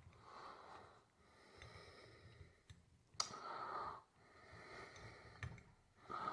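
Faint breathing of a person close to the microphone, several slow breaths, with one sharp click a little past three seconds in.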